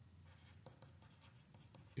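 Faint scratching and light tapping of a stylus writing on a tablet screen: a few soft ticks over near silence.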